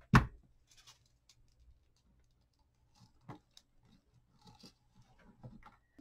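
Small tabletop handling sounds: a short knock at the start, then faint scattered clicks and rustles as an artificial frosted berry sprig is handled and cut, with one sharper click a little after three seconds.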